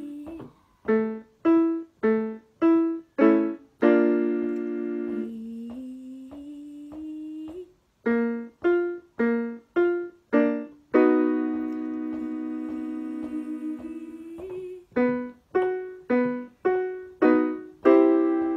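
Electric keyboard playing a vocal warm-up pattern: a run of five short, detached notes followed by a long held note, repeated three times, each round a step higher in key.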